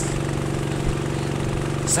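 A small boat's motor running at a steady speed: an even, unbroken drone.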